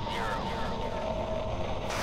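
A swelling wash of noise with a faint steady tone running through it, growing louder, and faint voice fragments in it shortly after the start: the ambient build-up of a track's intro before the spoken sample comes in.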